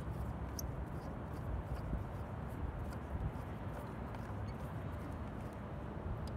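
Steady outdoor background noise with faint, scattered clicks as a Phillips screwdriver turns a small screw out of the plastic handle of a car side mirror.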